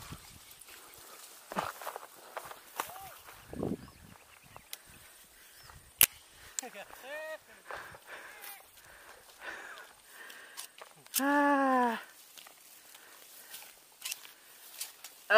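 Footsteps and rustling in dry grass with small handling clicks, broken by a few short vocal calls; the loudest is one drawn-out shouted call of about a second near the end.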